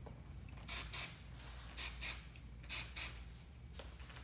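Aerosol can of Kérastase VIP volume powder spray giving six short hissing spurts in three quick pairs, about a second between pairs, as it is sprayed into the hair for volume at the crown.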